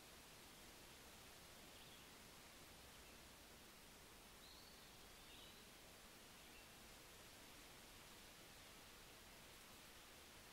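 Near silence: steady background hiss, with a few faint, short high chirps about two seconds and five seconds in.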